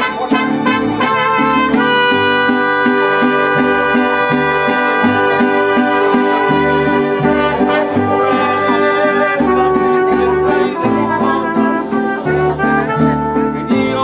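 A mariachi band playing live: violins carry the melody over strummed guitars, with a bass note and strum repeating steadily on the beat.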